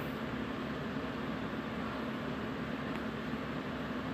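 Steady low background hiss with a faint hum: room tone.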